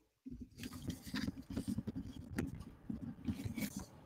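Irregular crackling and rubbing handling noise on a microphone that is set too loud, as its small gain knob is turned down. The noise runs for about three and a half seconds, mostly low in pitch, with many small clicks.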